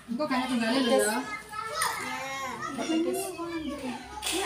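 Children's voices chattering and calling out as they play, with talk from other people mixed in.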